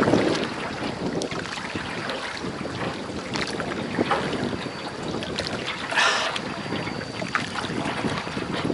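Wind buffeting the microphone over the water noise of a small hand-rowed boat on a river, with a short louder hiss about six seconds in.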